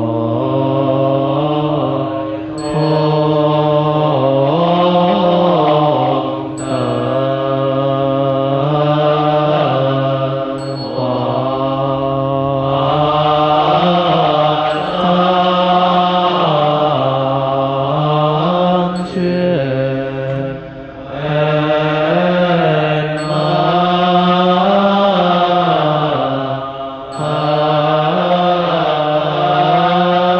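A monastic assembly chanting a slow, melodic Chinese Buddhist verse in unison, long held notes gliding up and down, with short breaks between phrases every few seconds.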